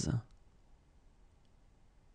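A voice finishing the spoken number seventy-six right at the start, then near silence: faint room tone with a couple of faint clicks.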